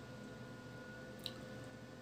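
Faint room tone with a steady low hum and thin whine, broken by one small click a little past a second in.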